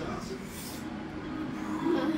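A lull in conversation: a steady low electrical hum in the room, with faint voices.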